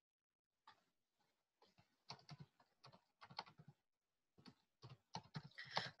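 Faint, irregular clicks of typing on a computer keyboard, starting about two seconds in, over near silence.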